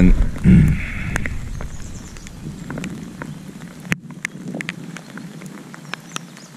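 A man clears his throat, then irregular light ticks of raindrops hitting the head-mounted camera over a faint hiss of rain.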